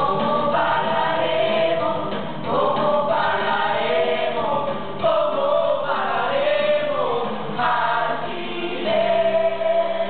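A musical-theatre cast singing an ensemble number together over backing music, recorded live in the theatre.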